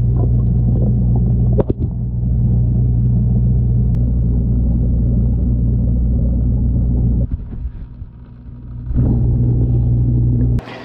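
Steady low electrical hum of an aquarium's filter pump, heard through a camera submerged in the tank, with a break of about a second and a half near the end.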